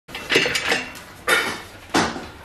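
A white metal safety gate being handled at its latch, rattling and clanking in a few sharp metallic knocks: a cluster near the start, another a little over a second in, and a last sharp clank at the end.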